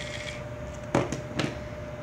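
Handling of small plastic toy-train parts on a tabletop: two short clicks about a second in and a moment later, over a faint steady hum. A thin high tone fades out just after the start.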